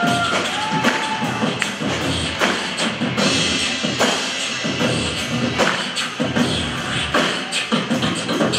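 Live band music with beatboxing into a handheld microphone, the beatboxer's mouth percussion keeping a steady beat over guitar, bass and drums.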